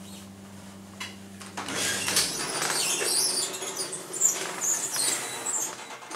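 A Westinghouse hydraulic elevator, modernized by Long, stopping at a floor. A steady low hum from the machinery cuts off about two seconds in. The doors then slide open with a rolling, rattling noise and high squeaks for a few seconds.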